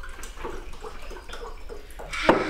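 Liquid being poured in a kitchen, with scattered small clinks of spoons and crockery at a breakfast table.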